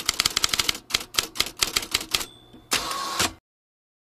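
Manual typewriter keys striking in a quick run of clacks, about eight a second, then a short bell ding and the rattle of the carriage being returned.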